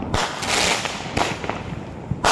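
Fireworks going off: a sharp bang, then a rush of hissing, and another bang about a second in, with scattered small crackles between.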